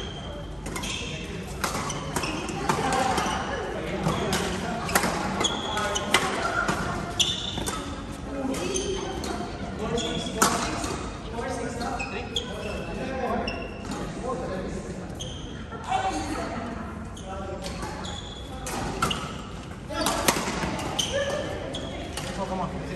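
Badminton rackets hitting the shuttlecock, sharp irregular clicks, with court shoes squeaking on the sports floor and indistinct voices echoing in a large hall.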